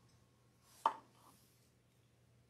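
A single sharp knock a little under a second in, a ceramic mug knocking against a hard tabletop as it is picked up. A faint steady low hum sits under the otherwise quiet room.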